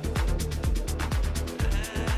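Techno DJ mix at about 125 beats per minute, a deep kick drum with a dropping pitch on every beat under synth chords and hi-hats, two tracks blended together.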